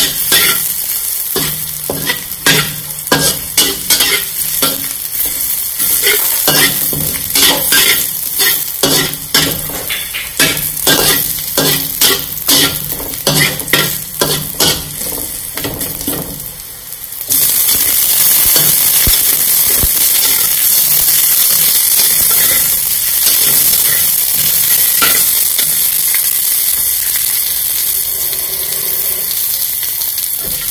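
Metal spatula repeatedly scraping and tapping against a metal wok as sliced shallots fry with a sizzle. About halfway through the stirring stops and the frying turns into a steady, louder sizzle.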